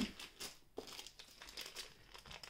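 Quiet crinkling and clicking of plastic wax melt packaging being handled, in a series of short separate crackles.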